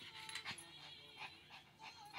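A dog whining faintly, two brief high whines, with soft rustling.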